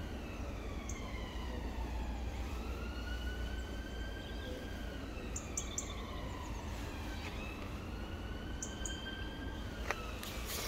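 Emergency vehicle siren sounding a slow wail, its pitch falling and rising in long sweeps of several seconds each.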